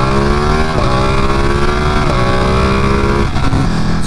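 Ducati Panigale sportbike's twin-cylinder engine pulling hard through the gears. Its pitch climbs and drops back at upshifts about one and two seconds in, and again near the end, over a steady rush of wind and road noise.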